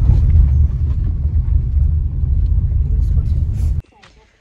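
Low, steady rumble of a car in motion heard from inside the cabin. It cuts off abruptly just before the end.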